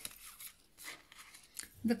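Soft rustling of a deck of tarot cards being handled, with the clearest brush of the cards about a second in.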